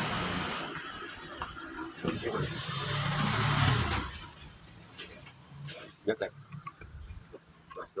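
A low, engine-like rumble swells and stops abruptly about four seconds in. After it come a few light clicks as a saw blade is handled at the clamp of a drill-powered reciprocating saw adapter.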